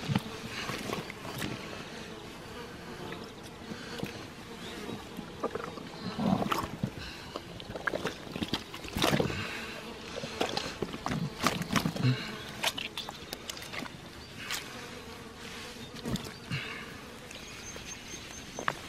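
An insect buzzing steadily, with scattered rustles, knocks and wet handling sounds from hands working a freshly killed fallow deer carcass.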